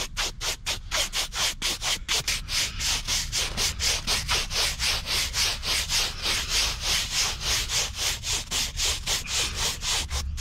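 Stiff hand scrub brush scrubbing the dry, exposed surface of a concrete stepping stone set with glass beads, in quick back-and-forth strokes of about five a second, to clear residue off the beads.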